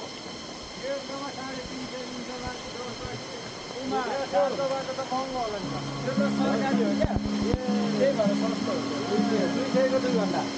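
People talking outdoors over a steady hiss, with background music of sustained low notes coming in about halfway through.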